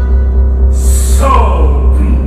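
Live theatre orchestra playing a held note. About a second in comes a short hissing burst, followed by a run of falling notes.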